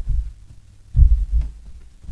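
A few dull, low thumps picked up by the pulpit microphone, the loudest about a second in: a man's footsteps as he steps away from the wooden lectern.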